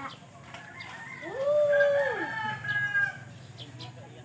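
A rooster crows: one long crow starting about a second in that rises, holds and falls away, with a second, higher-pitched crow overlapping it and running on about a second longer.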